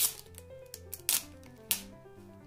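Thin clear plastic protective film being peeled from a PVC card sheet and handled, giving three short crackles, over background music with steady held notes.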